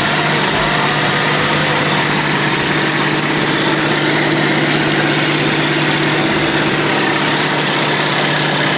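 Loud, steady drone of a North American T-28 Trojan's piston engine and propeller with rushing airflow, heard from inside the cockpit in flight. A steady low hum runs under an even wash of noise.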